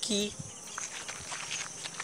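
Insects chirring in a steady, high-pitched drone, with a few faint clicks.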